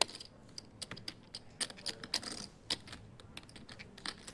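Poker chips clicking against one another in light, irregular clicks, a player handling his chip stack at the table.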